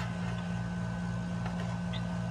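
A steady low mechanical hum with a faint regular pulsing, running under the pause. A faint tick or two near the end as the plastic mount is handled.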